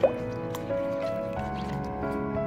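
Background music with sustained notes, with a faint liquid plop right at the start as a silicone spatula stirs a thin milk-and-egg mixture.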